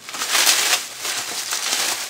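Bubble-wrap packing being handled and crinkled, loudest about half a second in, then a softer continuous rustle.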